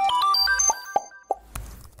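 Short channel logo jingle: a quick scatter of bright chiming notes with a few soft plop effects, dying away in the second half.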